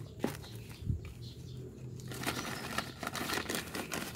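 Hands scooping loose soil from a plastic bucket and pressing it into the sides of black plastic polybags: crumbly scraping and plastic crinkling, denser in the second half, with a soft low thump about a second in.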